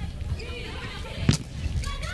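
A volleyball struck once with a sharp smack, a little over a second in, over steady arena background noise with faint voices.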